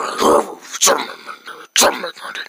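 A person's voice in a put-on character voice, with no clear words, in three short loud bursts.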